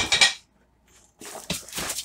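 Clattering and knocking of containers being handled and moved: one burst at the start, then a run of knocks in the second half after a short silent gap.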